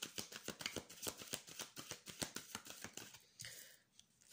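A deck of tarot cards being shuffled by hand: a quick, irregular run of soft card clicks and slaps that dies away about three seconds in.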